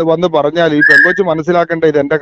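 A man talking without a break, with a short, steady, high whistle-like tone about a second in that ends in a click.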